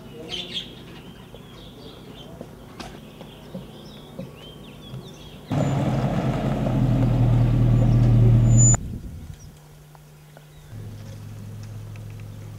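Birds chirping, then about five seconds in a pickup truck's engine comes in loud, running and growing louder for about three seconds before it cuts off suddenly. Near the end a quieter, steady low engine hum.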